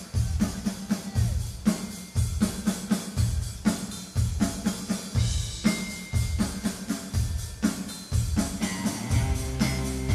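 Live indie rock band playing an instrumental passage, the drum kit's steady kick-and-snare beat to the fore over bass and other instruments.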